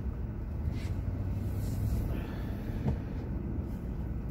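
Car cabin noise while driving slowly: a steady low engine and road rumble heard from inside the car, with one faint click about three seconds in.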